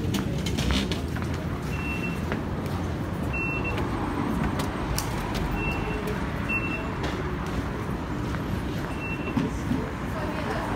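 Steady low rumble of road traffic and station bustle, with about five short high electronic beeps spaced a second or two apart from Underground ticket-barrier card readers as passengers tap out.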